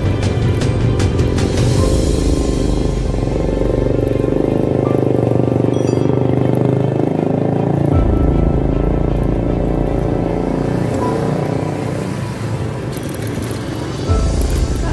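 Background music playing steadily.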